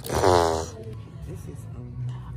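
A short vocal groan in the first half-second or so, then low background with a steady low hum.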